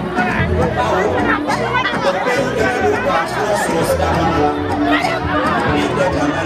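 A man's voice through a microphone and loudspeakers over backing music with held notes and a bass line, with a crowd chattering underneath.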